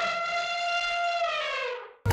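Synthesized sound effect: a single held electronic tone that slides down in pitch and fades out near the end.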